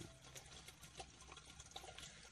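Faint water sloshing and small splashes from a hand moving under the surface of aquarium water, over a low steady hum.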